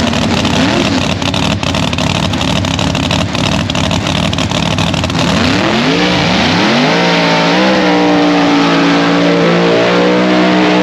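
Chevy Nova no-prep drag car's engine idling loud and rough close by, then from about halfway through revving up in steps and held at high revs, as in a burnout that leaves tyre smoke over the track.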